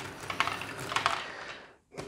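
Lego Great Ball Contraption module running: plastic balls and Lego parts clicking and rattling in quick, irregular ticks, cutting off abruptly near the end.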